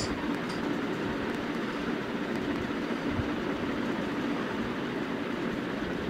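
Steady background noise: an even, constant hiss with no distinct events.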